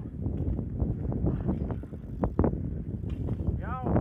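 Wind rumbling on the microphone while a BMX bike lands a jump on a concrete skatepark box, heard as two sharp knocks about two seconds in. A person starts shouting near the end.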